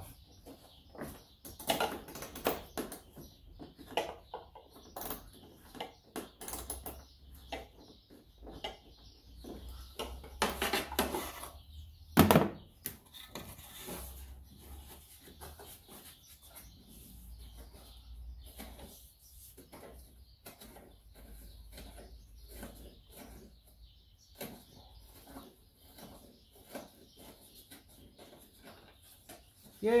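Scattered metal clicks and knocks of a hand tool working a fastener loose behind a cowl panel, with one sharp, louder knock about twelve seconds in.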